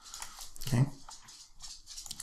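A man saying one short word, "okay," a little under a second in, in an otherwise quiet pause with faint room tone and small mouth clicks.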